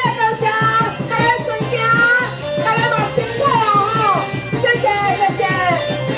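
Taiwanese opera (gezaixi) singing: a single high voice in long, gliding melodic phrases over instrumental accompaniment, amplified through stage loudspeakers.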